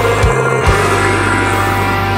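Death/doom metal: distorted electric guitars held over a low sustained bass note, with a couple of kick drum hits.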